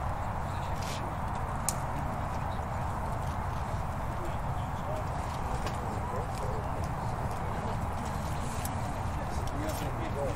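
Training-pitch ambience: a steady low rumble with a coach's and players' voices faint in the distance, growing a little clearer in the second half. A few sharp knocks come through, one about a second in and more near the end.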